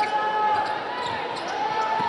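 Basketball being dribbled on a hardwood arena court, over steady arena background noise, with a drawn-out high-pitched squeal that breaks off briefly around the middle.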